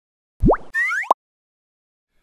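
Cartoon-style sound effects for an animated title card: a quick pop that sweeps up in pitch, then a few fast rising whistle-like glides. They are over by about a second in.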